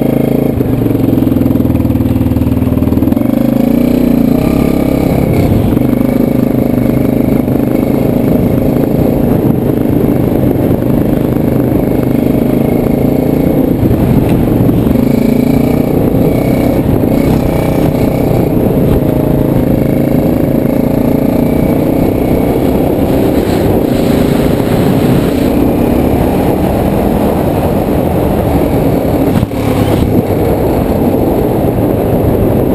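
A 2005 Bombardier DS650X quad's single-cylinder four-stroke engine running loud and close while the quad is ridden, its note rising and falling with the throttle.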